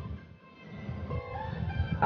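Quiet background music, with soft sustained notes.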